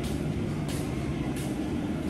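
Steady road and engine noise of a vehicle in motion, heard from inside the vehicle.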